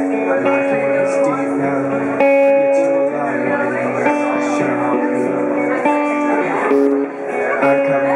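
Acoustic guitar strummed and picked, with a man singing long held notes over it that change pitch every second or so.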